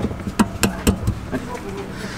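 A square steel hitch bar being worked into a Jeep's receiver hitch, steel knocking on steel: four sharp clanks in quick succession within the first second, then a few fainter knocks.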